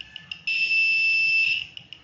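Small piezo buzzer on an ultrasonic distance sensor circuit beeping: quick high-pitched pips at about five or six a second run into a continuous tone of about a second, then go back to quick pips. This is the circuit's obstacle warning, beeping faster and then holding a steady tone as something comes close to the sensor.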